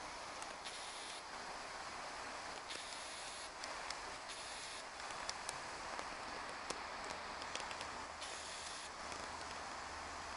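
Steady rush of a partly iced-over river flowing, with a few faint clicks and brief rustles.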